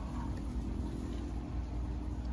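Low, steady background rumble with a faint hum in it, which fades near the end.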